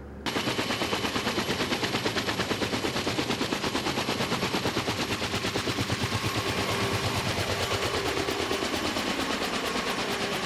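Helicopter rotor chop: a fast, steady beat of blade slaps, several a second, with a faint engine whine. It starts suddenly just after the start, as the helicopter lifts off and climbs.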